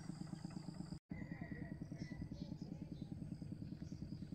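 A small engine running steadily in the background, heard as a faint, even, rapid low beat, with a brief dropout in the sound about a second in.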